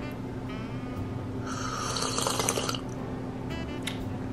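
Drinking from a glass bottle: liquid gurgling and gulping for about a second midway, the loudest sound here.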